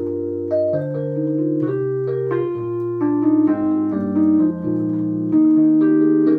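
Nord Electro 5 stage keyboard played solo: sustained chords over a moving bass line, changing every half-second to a second.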